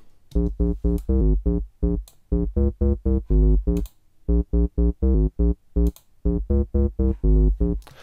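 A simple synth bass line from Logic's ES M synthesizer, played as short staccato notes in a phrase that repeats about every two seconds. Logic's Sub Bass plug-in is blended with the dry signal, adding deep sub-bass, grit and body to the low end.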